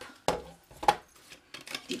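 Cardstock and hands knocking against a plastic envelope punch board as the paper is positioned: two sharp clicks about half a second apart, then a few softer ticks.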